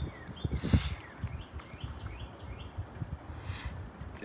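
A bird singing a quick run of short, falling chirps, about four a second. About half a second in come a few low thumps as a sandwich is bitten into and chewed.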